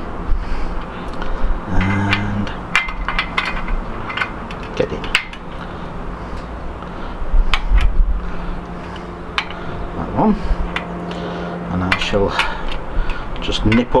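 Irregular metallic clicks and clinks of a spoke key working the spoke nipples of a bicycle wheel, loosening some spokes and tightening others about half a turn at a time to true a buckled wheel.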